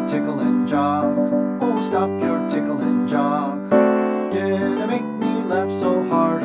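Piano-led music playing a lively chorus tune over a bass-and-chord accompaniment, with a wavering melody line on top.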